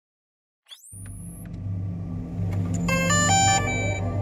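Logo-intro sound design: a quick rising whoosh, then a steady low electronic hum that builds, with a short run of bright chime-like notes stepping in near the end.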